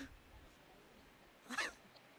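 Two brief high-pitched cries, one right at the start and one about a second and a half in, over faint room tone.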